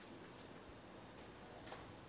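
Near silence: faint room hiss with a soft click or two, the clearest near the end.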